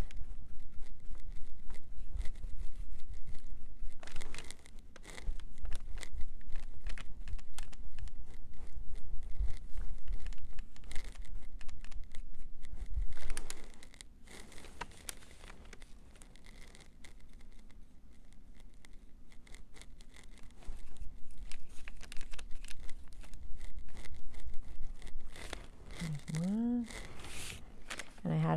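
Handling noise: rustling of the brown paper covering the table, with scattered light clicks and taps as small wooden cutout pieces and paint pots are picked up and set down, over low bumps. It goes quieter for several seconds just past the middle.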